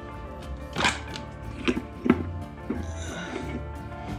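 Background music with a beat, over a few sharp metal knocks and clunks about a second and two seconds in as a Turbo 400 transmission's front pump is pried up out of its aluminium case with a screwdriver and comes loose.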